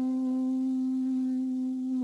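A woman's voice holding the long closing hum of a chanted yoga mantra, a steady 'mmm' at one even pitch.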